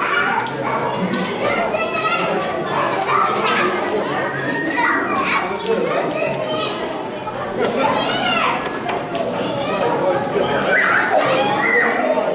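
Children playing and shouting as they run around a large hall, high voices and cries over steady background chatter, with the hall's echo.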